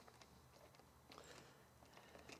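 Near silence, with a few faint small clicks and scrapes from a hand screwdriver turning a screw into the metal seat frame.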